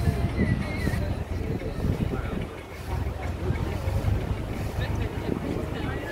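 A tour boat's engine running steadily, a low hum with wind buffeting the microphone, and faint voices of passengers in the background.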